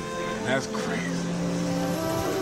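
A sparse break in the trap song, with no bass or drums: short pitched voice-like fragments about half a second in, then a steady low held note.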